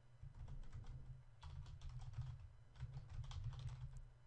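Typing on a computer keyboard: a run of quiet key clicks in quick, uneven bursts, over a steady low hum.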